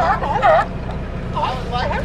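Sea lions barking in quick runs of short calls, a burst at the start and another near the end, over a steady low rumble.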